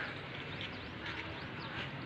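Faint outdoor background noise with short, high bird chirps scattered through it.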